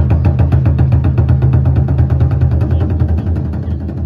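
Japanese taiko drums beaten in a fast, even roll of about eight strokes a second, with a deep rumbling low end; the roll softens and fades over the last second.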